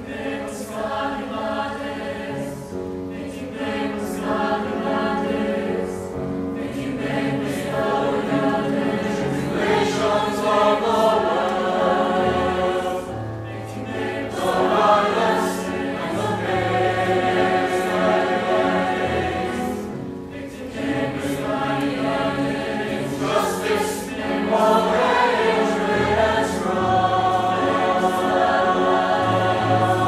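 A mixed high school concert choir singing a slow choral piece in harmony with piano accompaniment, in phrases with short breath pauses.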